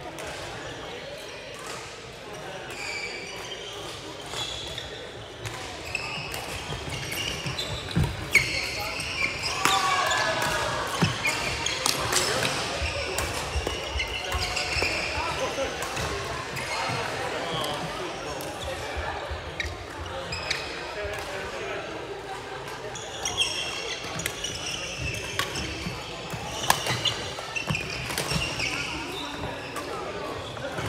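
Badminton play: rackets striking the shuttlecock and shoes working on the court floor, a string of sharp clicks and knocks. Players' voices and calls sound through the hall, loudest about a third of the way in and again near the end.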